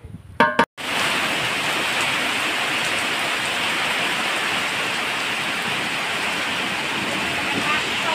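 Heavy rain falling steadily in a dense, even hiss, beginning about a second in after a brief snatch of voice.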